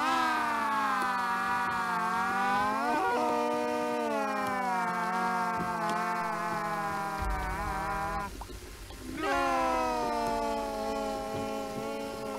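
A long, drawn-out wailing cry from a cartoon character's voice, held for about eight seconds with a slightly wavering pitch. It breaks off and starts again about a second later. A low hum comes in shortly before the break.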